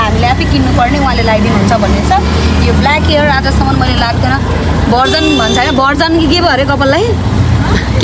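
Steady low rumble of the vehicle being ridden in, heard from inside the passenger cabin under continuous talking.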